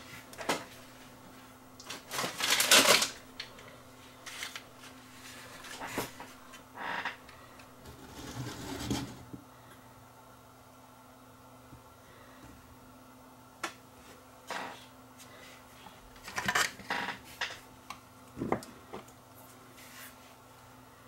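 Irregular small clicks, taps and scrapes of hands, a soldering iron and a tiny electrolytic capacitor being handled on a camcorder's circuit board during soldering, with the busiest cluster about two seconds in.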